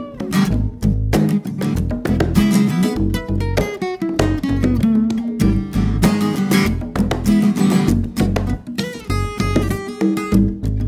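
Instrumental passage of a live acoustic trio: acoustic guitar strummed over hand percussion and bass guitar, with no singing. About four seconds in, a note slides downward in pitch.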